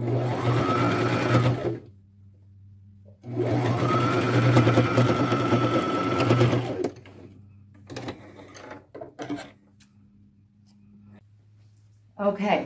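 Brother electric sewing machine stitching in two runs, one of about two seconds and one of about three and a half seconds, its motor whine rising as it speeds up at the start of each run. It is sewing a pleated ruffle seam closed through cotton T-shirt fabric. After the runs come a few light clicks and fabric handling.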